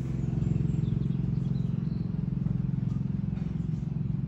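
Steady low machine hum.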